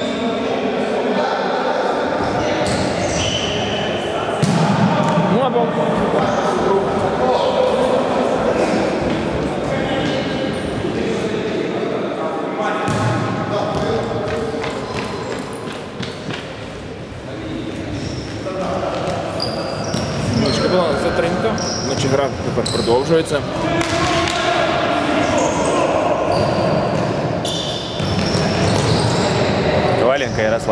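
Men's voices calling out across a large indoor sports hall, with the futsal ball thudding now and then as it is kicked. The whole sound is echoing.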